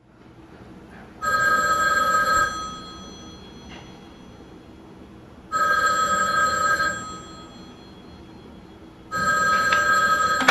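Telephone ringing three times, each ring lasting about a second and a half with a few seconds between rings, going unanswered while the sleeper lies on the sofa.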